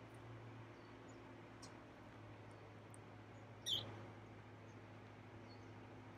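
Near silence outdoors: a faint steady low hum with a few faint high chirps, and one short, high-pitched squeak a little over halfway through.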